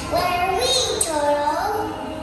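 A child singing, her voice gliding up and down through the phrase, with music playing behind it.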